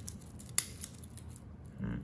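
Light metallic clicks from a metal watch bracelet being handled and its fold-over clasp opened, with one sharp click about half a second in and a few softer ones after.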